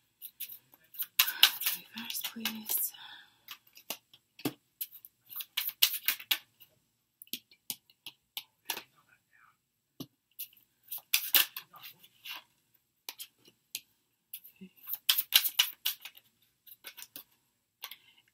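Tarot cards being drawn from the deck and laid down one after another: clusters of quick card snaps and slides every few seconds, with quiet gaps between.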